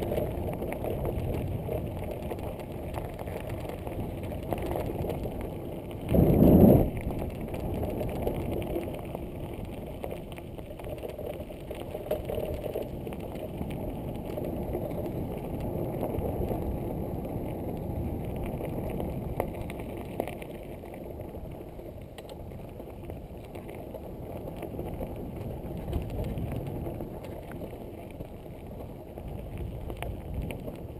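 Mountain bike rolling along a gravel and grass forest track: tyres running over the loose surface and the bike rattling over bumps. About six seconds in there is a brief, much louder rush.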